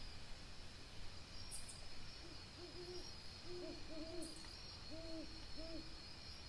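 A series of about eight short, low hoots, starting about two seconds in and coming in small broken groups, from a bird calling at night. A steady high chirring of night insects runs underneath.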